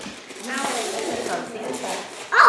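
Indistinct children's voices over the rustle and crackle of wrapping paper being torn off presents.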